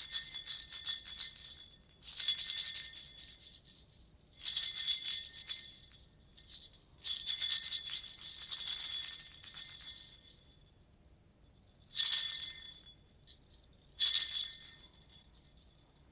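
A handheld stick of jingle bells (grelots) is shaken in six bright jingling bursts of uneven length, with silences between them. The pattern is deliberately irregular, with mixed rhythms and rests.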